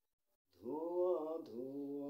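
A man singing a Bengali song unaccompanied, holding long notes that glide in pitch. His voice comes in about half a second in, after a short breath-pause of silence.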